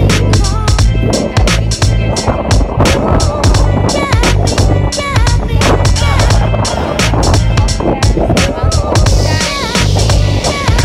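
Background music: an instrumental track with a steady beat and a stepping bass line.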